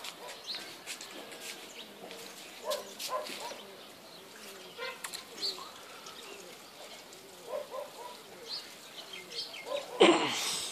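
Faint outdoor background with scattered short bird calls and the occasional distant dog barking, a few seconds apart.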